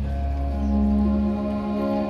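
Live orchestra playing slow, held chords over a sustained bass, with the harmony shifting about half a second in and again near the end.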